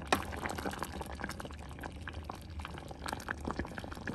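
Thick tomato marmalade boiling in a stainless steel pot, a dense run of small bubbling pops, while a wooden spoon stirs through it. A single sharper tap comes right at the start.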